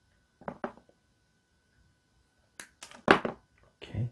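Hands handling a Milwaukee M12 battery pack's plastic housing and wiring: a couple of soft clicks about half a second in, then a cluster of sharp plastic clicks and knocks a little before three seconds in, with more near the end.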